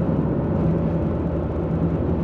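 Steady engine and road noise inside the cabin of a moving car, with a low even hum.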